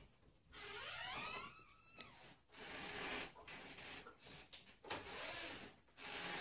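A faint squeak that rises in pitch over about a second and a half, followed by soft breathy hissing noises.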